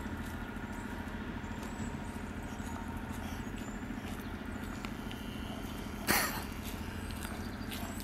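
Steady low engine hum, as of a vehicle idling, with a brief sharp noise about six seconds in.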